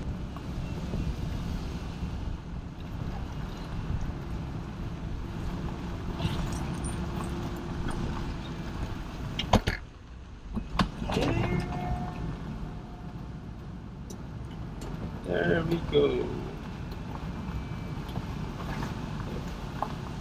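BMW 640i Cabriolet moving slowly with its folding soft top closing on the move: a steady low rumble of the car, a faint steady hum for a few seconds, and a sharp click about halfway through.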